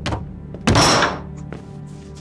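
Background score with a low steady drone, broken by one sudden loud thunk about 0.7 seconds in that fades within half a second.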